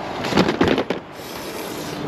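Objects being handled in a cardboard box as a framed picture is lifted out: a quick cluster of knocks and rustles in the first second, then a softer rustling hiss.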